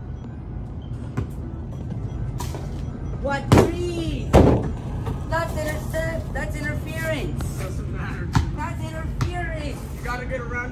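A basketball knocking on an asphalt driveway and against the hoop: a few sharp knocks, the loudest two about three and a half and four and a half seconds in, over a steady low rumble. Voices call out in the second half.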